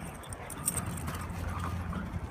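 Three black Labrador retrievers galloping across grass, their paws hitting the turf in quick, uneven footfalls.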